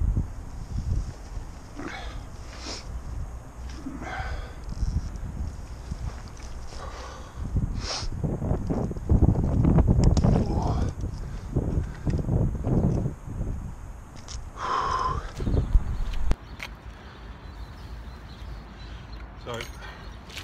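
Handling noise and water disturbance as a landing net holding a pike is lowered into canal water to release the fish. It is loudest in the middle and drops off sharply about sixteen seconds in.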